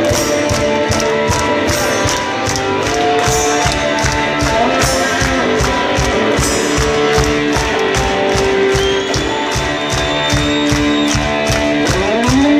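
Live rock band playing an instrumental passage without vocals: guitars and keyboard lines over a steady drum beat, loud and continuous.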